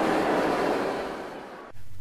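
Audience applause, a dense even clatter of clapping, fading away and gone shortly before the end.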